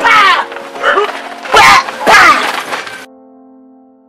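A scuffle with loud shouts or screams and sudden hits, twice, over background music; after about three seconds the struggle cuts off and only the music's held notes remain, fading.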